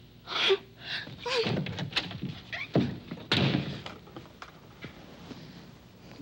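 A series of knocks and thumps like a door being shut and things handled, several over the first four seconds, the sharpest about three seconds in.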